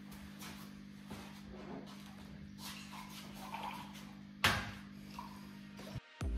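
Quiet room tone with a steady low hum and faint handling rustles, broken by one sharp knock about four and a half seconds in.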